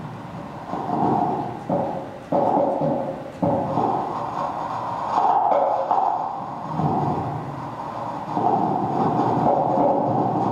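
Computer-generated sound from an interactive laser-pointer sound installation, played over loudspeakers: a continuous rumbling, noisy texture that jumps abruptly in loudness and colour several times as the laser dot moves across the wall. The sound is made in real time from the laser's movement and is meant to suggest the wall's texture or material.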